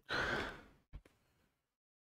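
A person's breathy sigh close to the microphone, loudest at once and fading within about a second, followed by a short low thump.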